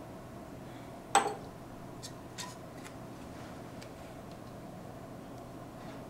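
Handling noises of hard objects on a lab bench: one sharp knock about a second in, then a few faint light clicks and taps.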